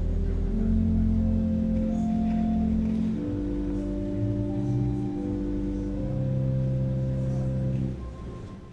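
Church organ playing slow, sustained chords over held bass notes, the chord changing every second or two.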